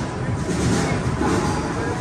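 Crowd babble and general noise of a busy exhibition hall, with no distinct strike or event standing out.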